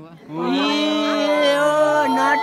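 A person's voice holding one long, loud note, starting about a third of a second in and sustained without a break.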